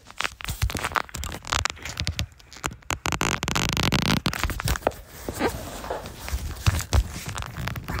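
Knocking, scraping and crackling as someone climbs up through an attic hatch: hands and body bumping the wooden joists and pushing through fiberglass insulation, in many irregular sharp knocks with a longer rustling stretch about three to four seconds in.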